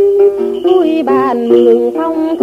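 Tày Then folk song music: a melody of held notes that step up and down, with plucked-string accompaniment.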